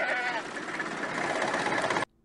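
A goat bleats once, briefly, near the start, over a steady rushing background noise.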